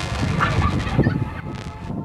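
Wind rumbling and buffeting on a camcorder microphone aboard a ship at sea: a loud, irregular, rough noise that fades a little near the end.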